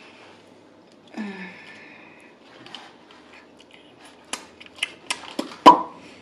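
Small handling noises of packets and utensils at a table: a short low sound about a second in, then a run of sharp clicks and taps over the last two seconds, with one louder knock just before the end.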